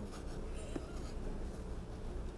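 Faint rustling and scratching of a plastic vinyl sheet and a cloth hive cover being handled over a beehive's frames, over steady low background noise.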